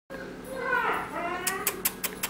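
A small puppy whining: a high call that glides down in pitch for about a second, followed by several sharp clicks near the end.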